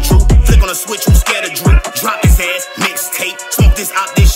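Hip-hop track with rapped vocals over deep bass hits that fall in pitch, about two a second. A held bass note underneath drops away about half a second in.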